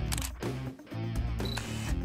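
Intro music with camera-shutter click sound effects near the start and a short high beep about one and a half seconds in.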